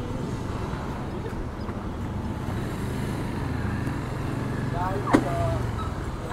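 Motor scooter engine running at low revs as the scooter rolls slowly, a steady low hum. About five seconds in, a short voice and a sharp click.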